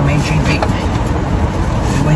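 Steady rushing noise filling a car's cabin, with a brief murmured voice near the start and a few light clicks about half a second in.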